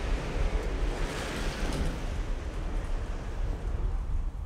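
Wind blowing across open, flat ice and buffeting the microphone, a steady rush with a deep rumble underneath.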